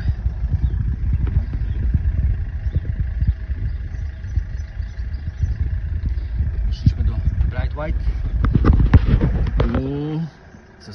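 Wind buffeting a phone's microphone: a loud, low rumble full of crackles that cuts off suddenly at the end, with a few brief words of speech near the end.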